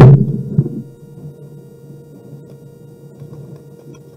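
A loud knock as a heavy file binder is set down on a wooden desk close to a microphone, with a smaller knock just after. Then only a steady low hum.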